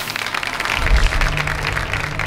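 TV segment-opening stinger: music with a dense, rapid rattling, clapping-like sound effect over a steady low tone.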